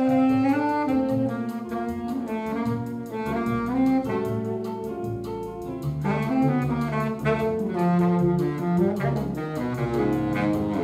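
Yanagisawa B-9930BSB baritone saxophone playing a bossa nova melody in held and moving notes, over a low bass accompaniment.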